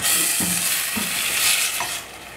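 Cubes of boiled pumpkin sizzling as they sauté in hot olive oil with onion and garlic in a stainless steel pot, stirred with a spatula. The sizzle is a steady hiss.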